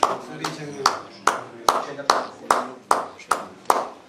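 Slow, evenly spaced hand claps, about two and a half a second, with low voices in the room between them.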